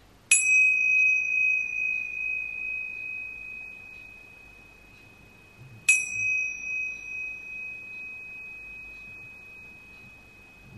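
A pair of tingsha cymbals struck together twice, about five and a half seconds apart, each strike leaving a long high ringing tone that fades slowly with a wavering level. They are rung to clear the energy before a tarot reading.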